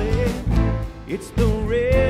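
Live country-rock worship song: a man singing over acoustic guitar and drums, ending on a long held note with vibrato.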